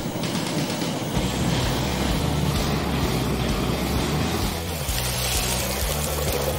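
Steady rushing noise of a block of ice being melted to free a frozen toy car, under background music.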